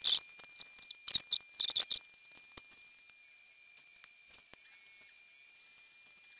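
Thin plastic laminating pouch crinkling and rustling as it is handled, in several short bursts over the first two seconds, then a few faint taps. A faint steady high whine runs underneath.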